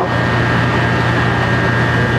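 Steady mechanical hum with a low drone and a thin high whine held at one pitch, as from running equipment such as ventilation or refrigeration machinery.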